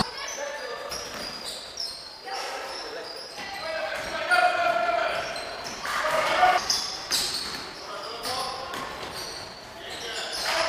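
Live sound of an indoor basketball game: the ball bouncing on the wooden court and players' voices calling out, echoing in the gym hall.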